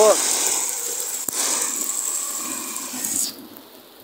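Hail coming down hard, a dense steady hiss of hailstones striking the street and cars, that cuts off suddenly about three seconds in and leaves a much quieter background.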